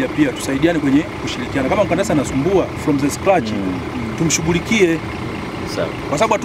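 Speech: a man talking over a steady low background rumble.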